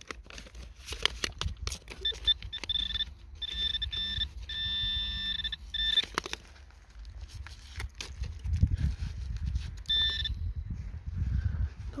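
Metal detector sounding its high steady target tone in several pulses, about two seconds in until six seconds and once more briefly near ten seconds: a shallow target reading 59–60. Between the tones come clicks, scraping and low knocks of dry clay clods being dug and handled.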